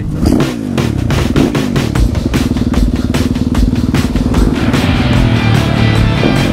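Dirt bike engine revved up and down, then held at a steady pitch as the bike rides off. Music comes in near the end.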